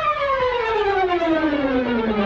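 Instrumental music: one pitched instrument plays a long, slow, steady fall in pitch, a falling glissando.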